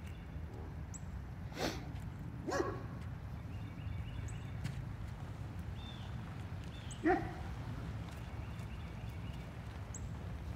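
A dog barking off and on: two short barks about a second apart, then a louder one several seconds later, over a steady low rumble.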